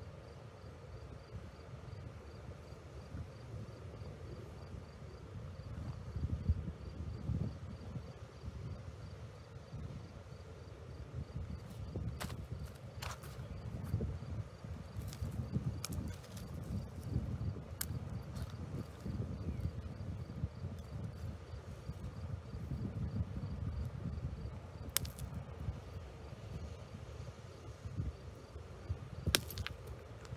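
Wind rumbling and buffeting on the microphone outdoors, rising and falling in gusts, with a faint, evenly repeating high chirping behind it. A few sharp clicks come now and then, two close together near the end.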